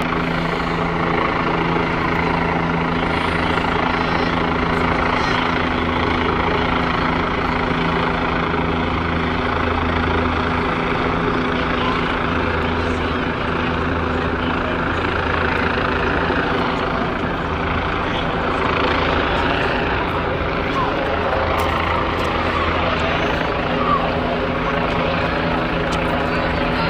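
Helicopter hovering overhead, a steady drone that holds level throughout, with voices of people on the street under it.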